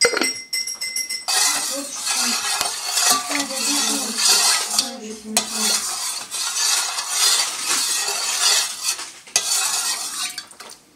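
Metal spoon stirring salt and sugar into water in an enamel bowl to dissolve them for pickling brine, scraping and swishing against the bowl's bottom and sides. It opens with a sharp clink that rings briefly, and the stirring pauses for a moment near the end.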